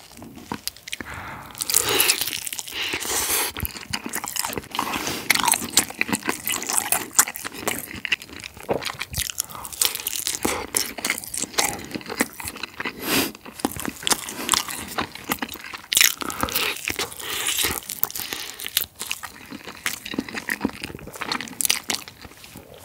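Yangnyeom-sauced Korean fried chicken breast being bitten and chewed close to the microphone, with irregular crunches of the thin fried coating throughout.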